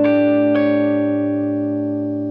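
Electric guitar, a Fender Stratocaster, sounding an arpeggiated dominant 11 chord with a minor seventh (a sus4 shape with the third on top), the voicing for the Mixolydian mode. One more note is picked about half a second in, then the whole chord rings on and slowly fades.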